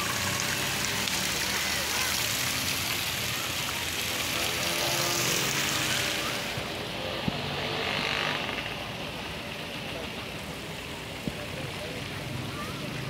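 Fountain water splashing into a pond, a steady rushing hiss that fades about six seconds in. A quieter background with faint distant voices remains.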